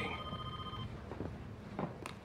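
Electronic telephone ring: one short trill of under a second at the start, followed by a few faint knocks.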